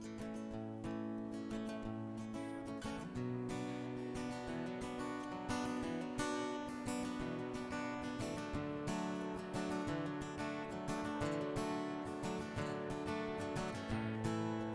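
Acoustic guitar playing an instrumental intro, strummed chords that fill out about three seconds in.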